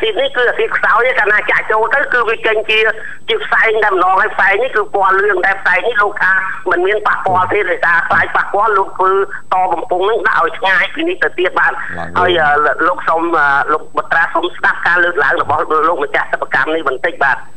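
Continuous speech that sounds thin and cut off at the top, as over a telephone line.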